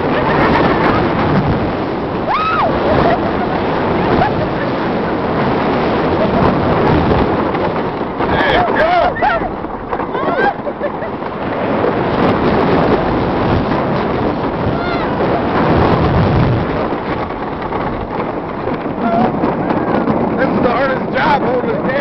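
The Racer wooden roller coaster train running fast along its wooden track: a loud, steady rumble and rattle with wind rushing over the microphone. Riders cry out a few times over it, the last near the end.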